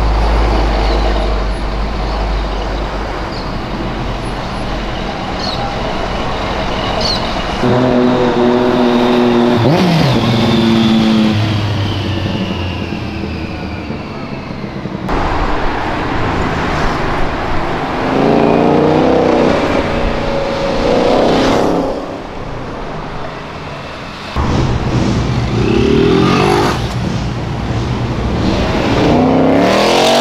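Street traffic with several cars passing close by in turn, their engines revving loudly, each engine note swelling and falling away as the car goes past. A Ford Mustang passes near the end.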